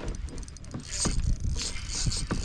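Baitcasting reel's drag slipping in a fast run of clicks as a hooked bass pulls line off, thickening about a second in: the drag is set too loose.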